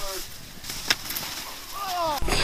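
A man's laugh trailing off, then a quiet stretch with one sharp click about a second in, and a short sound falling in pitch near the end.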